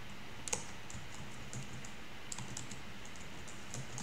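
Computer keyboard being typed on: irregular, scattered keystrokes, the loudest about half a second in.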